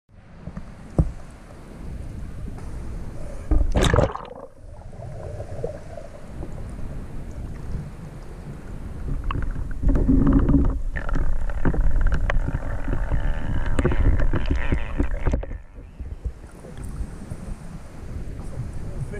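Water sloshing and splashing around a waterproof action camera held at a river's surface, with one loud splash about four seconds in. From about ten seconds the camera is underwater and the sound turns to a loud, muffled low rumble. It cuts off suddenly a couple of seconds before the end.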